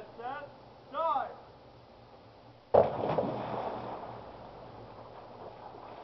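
A person jumping into a swimming pool: one sudden loud splash about three seconds in, then the water washing and settling for a second or two.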